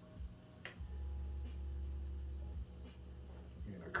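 Light scratchy rubbing of a Nike Dunk Low sneaker being handled and turned in the hands, with a click about two-thirds of a second in, over a low steady hum.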